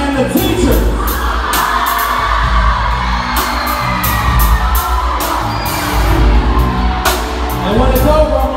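Live band playing a song: drum kit with frequent cymbal crashes over a steady bass line, with a singer.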